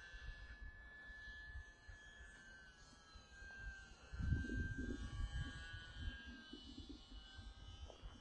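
Faint whine of the Hobbyzone Champ S+ RC plane's electric motor and propeller in flight, its pitch sagging and rising a little as it flies. About four seconds in, a low rumble of wind on the microphone is briefly the loudest sound.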